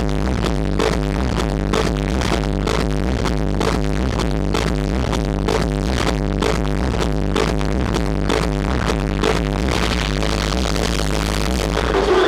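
Techno DJ set played loud over a club sound system: a steady four-on-the-floor kick drum at about two beats a second over a heavy bass.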